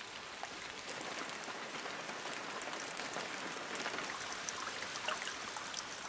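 Steady rain falling on water and leaves, with many small drop splashes scattered through it.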